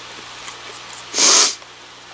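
A single short, loud breath noise, a huff of air through the nose or mouth, about a second in, while chewing food.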